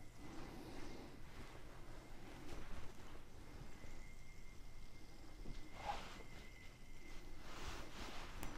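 Faint handling sounds of a spinning yo-yo and its string being worked by hand, a few soft brushes over quiet room tone. A faint steady high tone runs through the middle.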